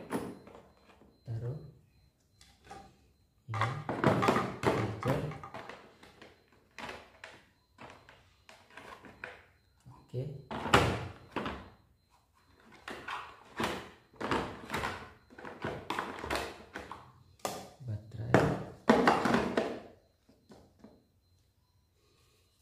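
Hard plastic carrying case being packed: a series of irregular thunks and knocks as a metal spray lance, charger, plastic bottle and battery are set into its moulded compartments.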